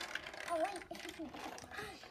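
Small plastic clicks and rattles from a hand-held LEGO marble maze as it is tilted, the ball knocking against the bricks, under faint children's voices.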